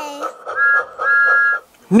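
Two toots of a steam-train whistle sound effect, a short one then a longer one, each sounding two close notes together, over a soft regular beat of about four pulses a second.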